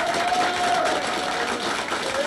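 Audience clapping in a small room just after a folk tune ends, with one long held call above the clapping through the first second and a half.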